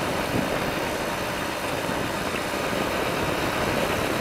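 Motorcycle cruising steadily at road speed: an even rush of wind over the microphone mixed with engine and road noise.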